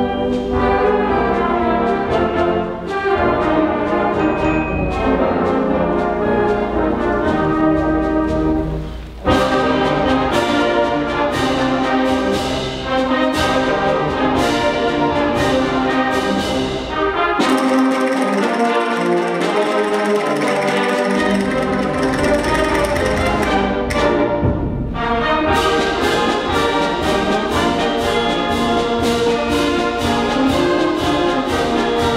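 A middle school symphonic band playing a march live, brass and woodwinds over a steady beat. The low bass parts drop out for a few seconds past the middle, then come back in.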